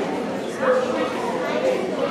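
Chatter in a large hall: many indistinct voices talking over one another, with one brief higher-pitched exclamation about half a second in.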